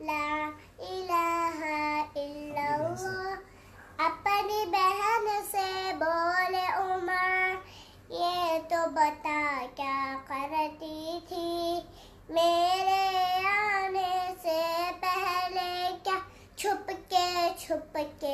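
A young girl singing a naat without instruments, in long phrases with short breaths about every four seconds.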